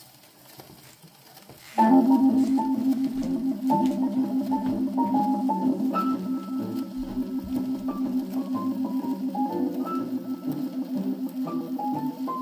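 A 78 rpm shellac record of a swing-era jazz small group playing on an acoustic Orthophonic Victrola phonograph. The first couple of seconds are faint crackle of the needle in the lead-in groove, then the band comes in loud, with a steady pulsing rhythm under a moving melody line.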